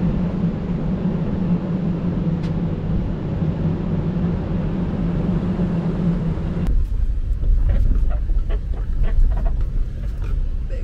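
Off-road vehicle driving slowly up a rough gravel trail: steady engine and tyre noise picked up from outside at the front of the hood. About two-thirds of the way through, the sound changes to inside a cabin: a deep low rumble with many small rattles and clicks as the vehicle rolls over the gravel.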